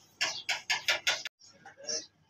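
An animal calling: a quick run of about five short calls, roughly five a second, that stops abruptly a little over a second in, with one fainter call near the end.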